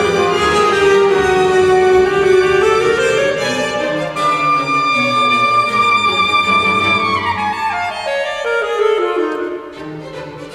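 Saxophone and string orchestra playing classical concert music. Bowed strings sound throughout, a long high note is held from about four seconds in, and it breaks into a falling run of notes before the music turns quieter near the end.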